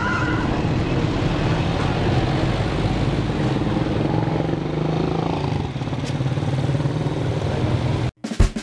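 Engine of the vehicle carrying the camera running steadily as it rides along a street, with road and traffic noise over it.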